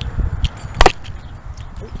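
A lanyard knocking against a handheld camera: one sharp click a little under halfway through, over low rumbling handling noise from walking with the camera.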